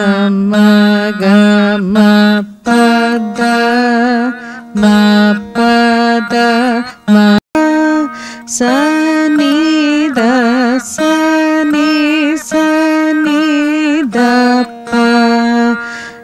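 Carnatic veena played note by note through a beginner's alankaram exercise. Each plucked note rings on, and several are bent and shaken in pitch on the fret. The sound drops out very briefly about halfway through.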